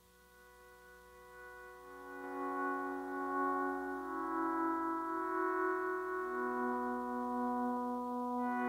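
Opening of a live band's song: sustained, ambient chords fading in over the first two seconds or so and then holding, with the low note stepping down about six seconds in. No drums.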